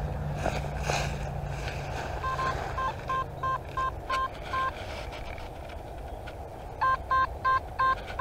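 Nokta Makro Simplex+ metal detector sounding a target: short repeated beeps of one steady tone as the coil sweeps back and forth over the spot, a run of about six from about two seconds in and another of about five near the end. A clean, repeatable signal that the detectorist calls a decidedly better sound, unlike the iron junk before it.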